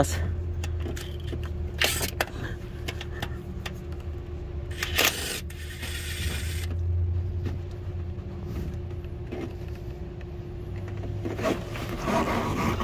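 Hand tools clicking and scraping on metal as the bolts holding a 5.3 V8's oil pump are worked out, with a longer rustling scrape about five seconds in. A steady low hum runs underneath.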